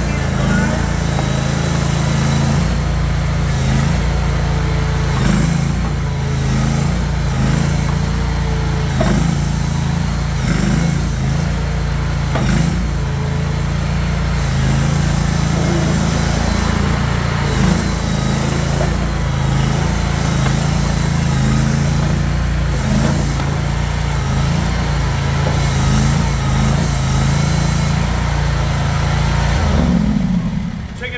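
Tuff Lift mini skid steer's 739 cc, 23.5 hp gas V-twin engine running steadily while the tracked machine is driven, with a few short knocks along the way.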